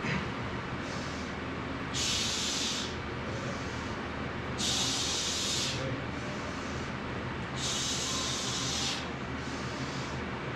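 A lifter breathing hard through a heavy barbell bench-press set: three loud, hissing exhales about a second long, roughly three seconds apart, with quieter breaths between. A steady low hum runs underneath.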